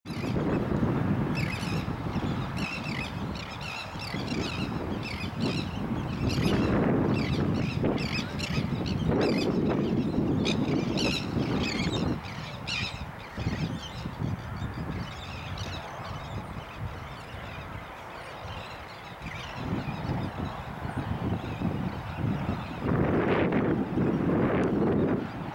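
Wetland birds calling in many short, quickly repeated calls, thick during the first half and thinning out after about twelve seconds, over a steady low rumble.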